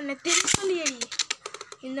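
Two Beyblade spinning tops ripped from their cord-pull launchers with a quick rasp and a sharp snap about half a second in, then a rapid run of light plastic clicks as the tops land and clash against each other and the sides of the paper-lined tray arena. A voice shouts over the launch.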